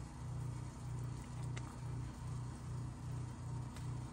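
Quiet, rhythmic whisking of a thick cheese sauce with a silicone whisk in an enamelled pan, about two to three strokes a second, as shredded cheese is stirred in.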